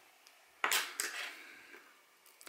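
Brass tweezers set on a Seiko 7548 quartz watch movement to pull off the cannon pinion: a short scraping rustle about half a second in, with a small sharp click, fading within a second.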